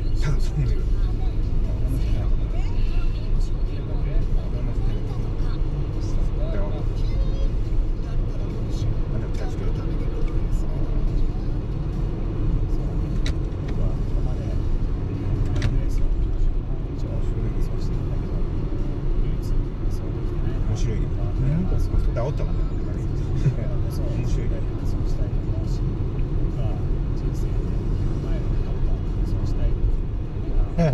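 Steady in-cabin road and engine noise of a car cruising, a low rumble that holds even throughout.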